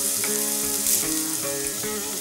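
Tempering sizzling in hot oil in a pressure cooker: mustard seeds, lentils and sliced onion frying steadily as curry leaves are dropped in.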